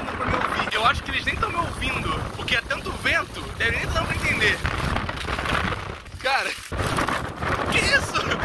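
Strong wind buffeting the phone's microphone, a heavy rumbling noise that all but drowns out a man talking.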